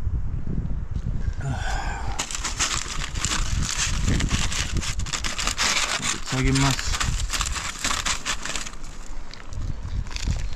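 Aluminium foil crinkling as it is handled and pulled open to take out a piece of bread, a dense crackle starting about two seconds in and stopping about a second before the end.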